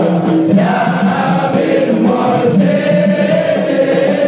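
A group of men singing an Islamic devotional chant together, with one voice led through a microphone. The singing is loud and unbroken, with long held notes.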